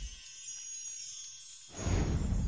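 Sound effects of an animated logo sting: high ringing, chime-like tones fade away, then a loud, deep rushing sound swells up near the end.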